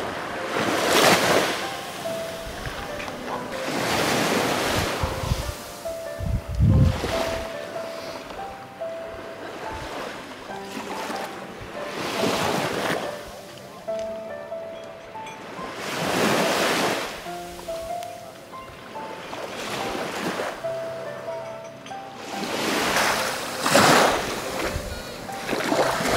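Sea waves washing onto the shore, rising and falling in a noisy swell every few seconds, with faint music playing between the swells.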